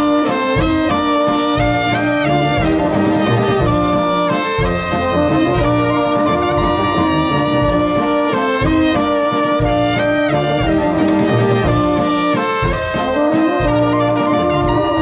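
Moravian brass band (dechovka) playing live: trumpets and trombones carry the melody over a rhythmic brass bass, an instrumental passage with no singing.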